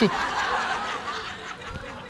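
Audience laughter that dies away gradually.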